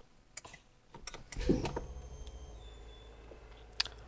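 A few clicks, then the Mustang's engine starts with the push-button starter about a second and a half in, flaring briefly and settling into a steady low idle.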